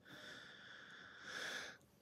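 A man's faint breath in a pause between sentences: a soft airy hiss that swells in the second half and then stops.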